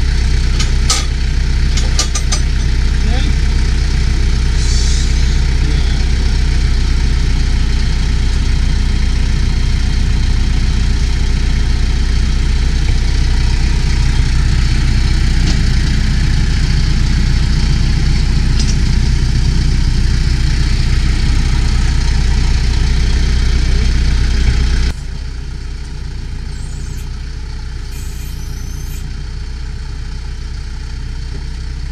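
Branson 5520c compact tractor's diesel engine idling steadily, with a few sharp metallic clanks in the first couple of seconds as the backhoe's safety catches are released. About 25 seconds in the rumble drops suddenly to a quieter, more distant idle.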